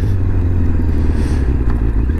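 Kawasaki ZZR600 sport bike's inline-four engine running steadily at low road speed: a constant low engine hum under a hiss of wind and road noise.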